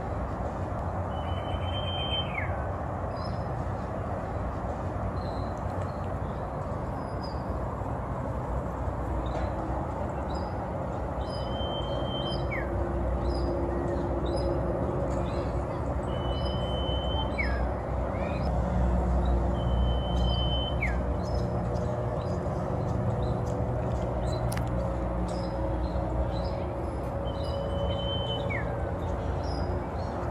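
Common iora singing: five long whistles spaced several seconds apart, each held on one high note and then dropping sharply at the end. Short high chirps and a steady low traffic rumble run beneath.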